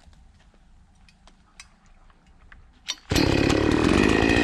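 Oleo-Mac GS 651 two-stroke chainsaw starting up. A few faint clicks and a sharp sound come just before the engine catches about three seconds in, and it then runs loud and steady.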